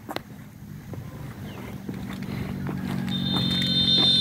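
An engine running steadily, growing gradually louder, with a sharp click near the start and a steady high-pitched tone joining about three seconds in.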